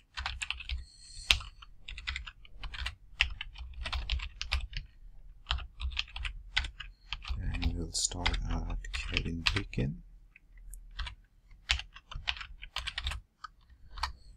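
Typing on a computer keyboard: runs of quick keystrokes with short pauses in between.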